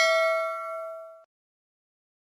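Bell-like ding sound effect of a subscribe-button and notification-bell animation, ringing out with a few steady tones and fading away, stopping about a second and a quarter in.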